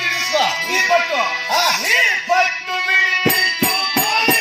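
Live stage-drama music: a voice sings a melody whose pitch arches up and down over a steady held drone, with a few sharp strikes near the end.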